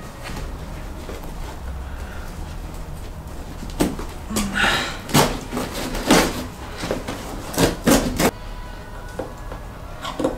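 Fringe trim being pulled off a fabric lampshade: a run of knocks and rustling, tearing noises from about four to eight seconds in, over a low steady hum.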